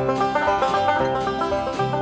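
Banjo picking over acoustic guitar, playing a country song's accompaniment.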